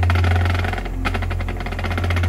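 Marching band show music: a rapid, even pulse of about twenty strokes a second over a sustained low bass note.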